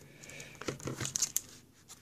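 Plastic film and cardboard packaging crinkling and rustling as a tablet is lifted out of its box, with a cluster of small sharp crackles in the middle.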